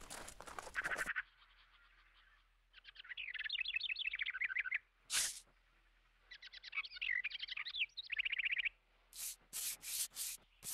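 A bird twittering in fast chirping trills, in two runs with a pause between them. Short rustling, rubbing noises come at the start, once about five seconds in, and as a quick series of strokes near the end.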